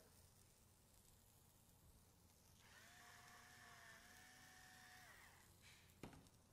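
Near silence: faint room tone, with a faint, steady pitched tone for about two and a half seconds in the middle.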